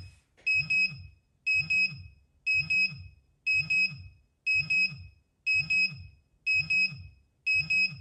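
Pudibei NR-750 Geiger counter's radiation alarm sounding in pairs of short high beeps, about one pair a second, with a low hum under each pair. The alarm signals a dose rate above its 0.50 µSv/h threshold, picked up from the americium-241 in a smoke detector.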